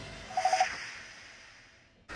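Tail of a TV programme's intro jingle fading out, with a brief swish and three quick short beeps about half a second in.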